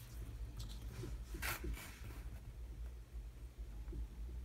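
Faint rustling and light scraping as a paper template and a small wooden jig are handled and slid on a cutting mat, with one louder brush about one and a half seconds in, over a steady low hum.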